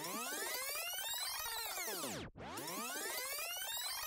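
An edited-in electronic sound effect: many tones sweeping up together and then gliding back down, played twice in a row, each sweep about two and a half seconds long.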